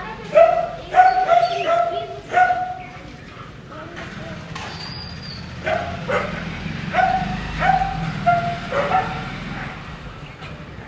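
A dog barking repeatedly in short, high yaps: a quick run of barks in the first couple of seconds, then another run after a pause. A steady low rumble lies underneath.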